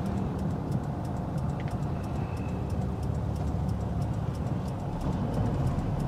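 Steady engine and road noise of an old sedan being driven, heard from inside the cabin as a constant low rumble.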